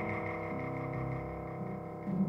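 Symphony orchestra playing avant-garde sonoristic music: a dense cluster of many held tones sounding together without melody, slowly softening.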